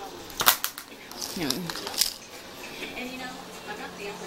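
A few sharp clicks: a quick cluster about half a second in and a single one at about two seconds.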